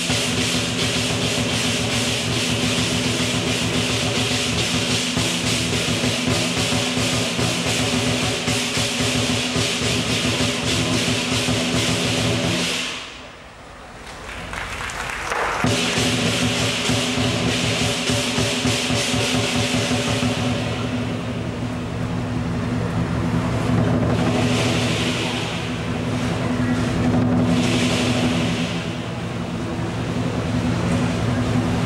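Southern lion dance drum, cymbals and gong playing a fast, dense beat with cymbal crashes and gong ringing. The playing drops away briefly about 13 seconds in, then picks up again.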